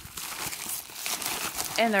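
Plastic mailer bag crinkling continuously as it is handled and worked open, the mailer taped shut.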